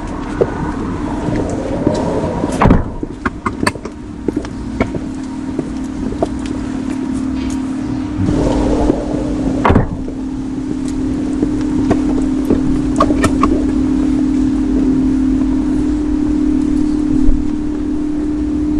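Steady car hum with scattered light clicks and two louder knocks, about three and ten seconds in.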